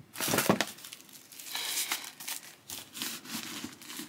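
Paper stuffing crinkling and crumpling as it is pushed by hand into leather boots to keep their shape, in repeated short bursts.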